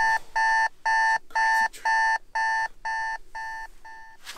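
Electronic alarm beeping in a steady repeated pattern, about two beeps a second, each one a short pure electronic tone. The beeps drop in loudness in the second half, as when an alarm wakes a sleeper.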